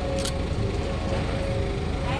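Steady low rumble of street traffic or an idling vehicle, with a brief high-pitched hiss about a quarter second in.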